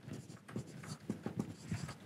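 Dry-erase marker writing on a whiteboard: a quick, quiet series of short strokes and taps.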